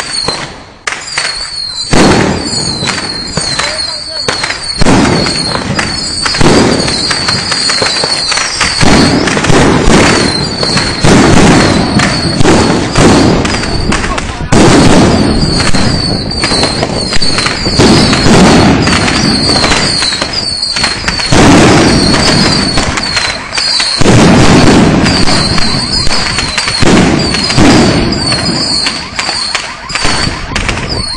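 Firecrackers and ground fireworks going off in dense, rapid volleys of sharp bangs and crackling that surge and ease through the whole stretch. Short high whistles repeat over the bangs.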